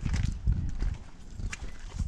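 Handheld action camera being moved and turned: irregular low thumps and rubbing on the microphone, loudest in the first second.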